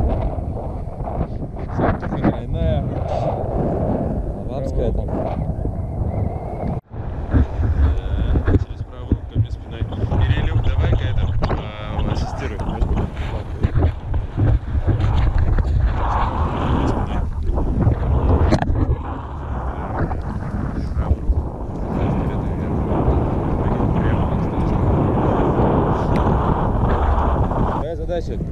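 Wind buffeting an action camera's microphone high on an open tower: a heavy rumbling noise that rises and falls in gusts, cutting out briefly about seven seconds in.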